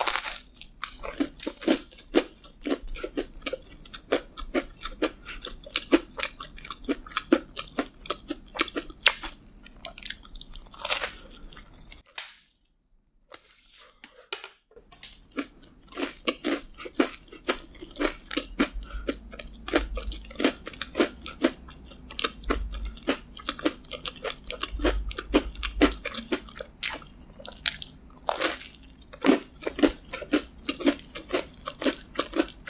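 Close-miked biting and chewing of a chocolate-glazed yeast donut topped with crunchy Oreo O's cereal. There is a bite at the start, then many small crisp crunches over soft, chewy dough. The chewing stops for about two and a half seconds in the middle, then goes on.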